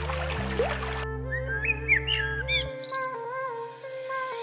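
Background music with a steady bass line throughout. Running water fills the first second, then a Eurasian blackbird sings short whistled phrases with a few higher twittering notes.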